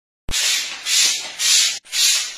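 Plunger-type hand-pump insecticide sprayer being pumped, giving a hiss of spray with each stroke, about two strokes a second, after a click at the start.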